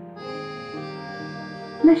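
Soft instrumental accompaniment of a children's lullaby: held, reedy notes that shift to a new chord about three-quarters of a second in. The singing voice comes back in just before the end.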